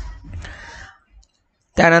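Clicking and rustling noise close to the microphone for about a second, then a pause, and speech begins near the end.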